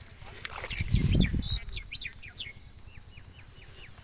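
Birds calling, with many short high chirps and a run of about five quick falling chirps past the middle. A brief low rumble about a second in is the loudest sound.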